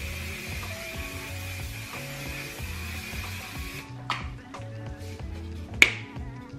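Aerosol can of One/Size setting spray hissing in one continuous spray for nearly four seconds, then cutting off. A click follows, and a sharper, louder click near the end.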